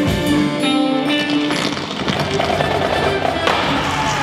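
Irish rock music: fiddle and electric guitar playing held, sustained melody notes, with a sharp hit about three and a half seconds in as the sound turns denser and noisier.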